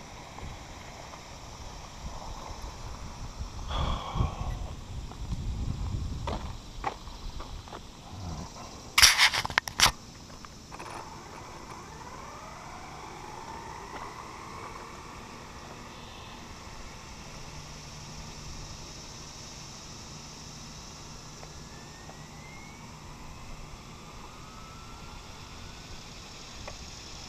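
Electric RC car's motor on an 8S battery during a speed run: a low rumble as it gets going, a loud short rushing burst about nine seconds in, then faint whines gliding in pitch as it runs far down the road.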